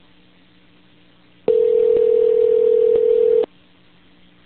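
Telephone ringback tone: one loud, steady two-second ring on the line, the sign that the call is ringing through to the other end. A faint low hum of the phone line sits under it.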